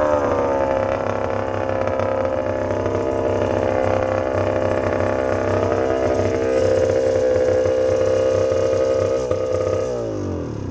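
A vintage dirt bike's engine heard close up from the rider's position, running at low revs as the bike rolls slowly. Its pitch falls during the first second, holds steady, then drops again at the very end as the bike slows.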